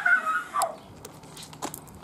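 A child's short, high-pitched squeal, followed by a few faint clicks and taps.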